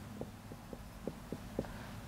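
Faint, short taps of a whiteboard marker writing on the board, about six soft ticks spread over two seconds, over a low steady room hum.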